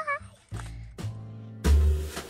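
A young child's brief, high, wavering squeal at the start, followed by music with sustained low notes and a few sharp struck beats.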